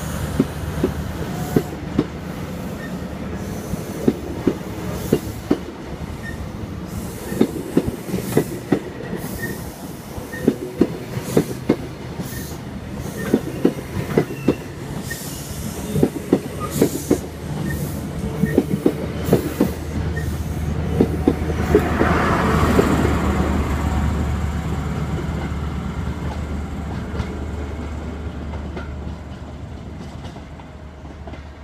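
High Speed Train (InterCity 125) pulling out: its Mark 3 coaches roll past with a steady run of wheel clicks over the rail joints, over the low drone of the Class 43 diesel power cars. The engine noise swells as the rear power car goes by, about two-thirds of the way through, then fades as the train draws away.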